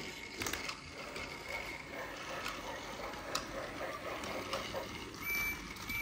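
Small battery-powered gear motor of a motorized toy Percy engine running steadily, with faint clicks from the toy on the track. A short steady high tone sounds near the end.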